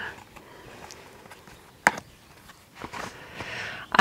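Handling of a plastic takeaway container lined with damp kitchen paper: one sharp click about two seconds in, then a soft rustle near the end.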